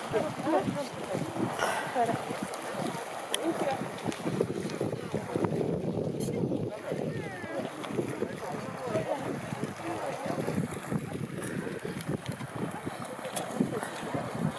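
Indistinct voices of people talking nearby, with wind rumbling on the microphone.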